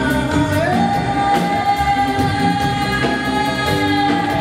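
Live band music: a male singer slides up into one long held high note about half a second in, over a drum kit with cymbals.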